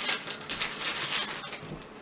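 Crinkling and rustling of a plastic package being opened by hand: a dense run of small irregular crackles that grows quieter near the end.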